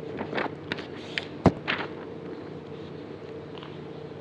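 A sheet of printer paper being handled: a few short crackles and taps in the first two seconds, the loudest about a second and a half in, over a steady faint hum.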